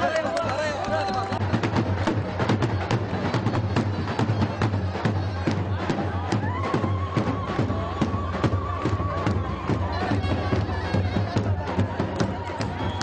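A celebrating crowd shouting over a steady rhythmic beat. A long, high, wavering note is held through the middle.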